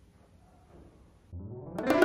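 Near silence with a faint trickle of thick smoothie poured into a glass, then music cuts in about a second and a half in with a rising sweep of plucked-string notes.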